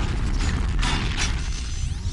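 Television title-sequence sound effects: mechanical ratcheting and gear-like clicking with a sweeping whoosh about a second in, over a heavy, steady low bass.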